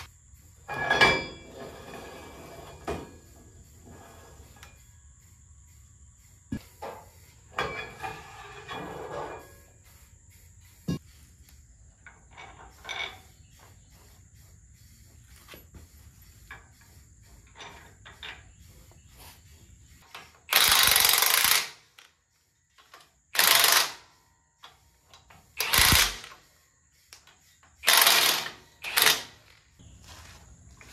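Metal hand tools and parts clinking and tapping on a truck's front differential. In the last ten seconds come five short, loud bursts of a power tool, each about a second long.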